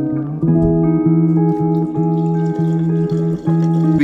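Background music led by a plucked guitar, with a steady beat.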